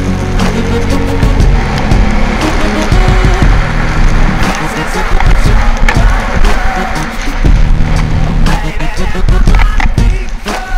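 Skis scraping and chattering over hard-packed snow, with background music carrying a steady bass line.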